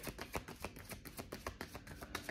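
A deck of tarot cards being shuffled by hand: a quick, soft run of card clicks, many to the second.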